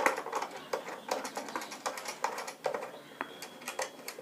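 Irregular small clicks and rattles of plastic and metal parts as the ring light's phone holder is worked and tightened onto its ball-head mount by hand.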